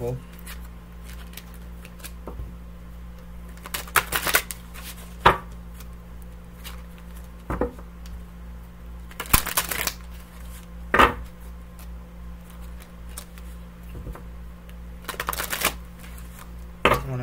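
A new Tarot of Mystical Moments deck being shuffled by hand, in short bursts of rustling, about six times with pauses between. A steady low hum runs underneath.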